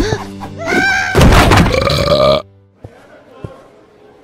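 Wordless cartoon-character vocal sounds, a bending, groaning voice, over background music. Both cut off suddenly about two and a half seconds in, leaving a quiet stretch with a few faint taps.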